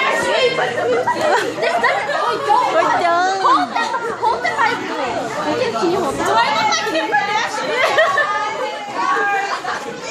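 Excited chatter of a group of girls and young women talking and calling out over one another, with bursts of laughter.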